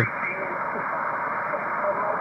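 Shortwave receiver audio from the 40-metre band played over a speaker: a steady hiss of band noise, cut off sharply above about 2.5 kHz, with a weak single-sideband voice faintly heard beneath the static.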